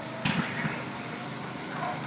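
Small go-kart engines running at a distance, a steady low drone, with a short burst of noise about a quarter of a second in.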